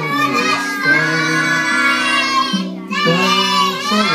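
A group of young children singing a song together over a steady instrumental accompaniment.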